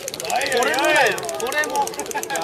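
Voices of several people talking in a busy crowd, with one voice rising and falling loudly about half a second in.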